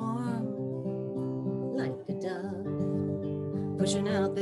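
Acoustic guitar strummed in a folk song accompaniment, with steady ringing chords and a brief drop in level about halfway through.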